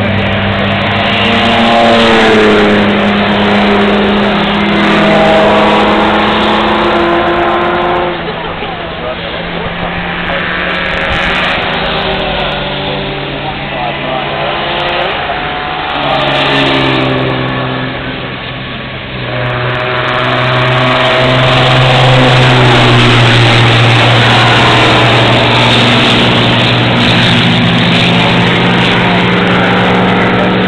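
Several race car engines running on the circuit at once, their notes rising and falling as they accelerate and shift. The sound dips twice in the middle and is loudest over the last third.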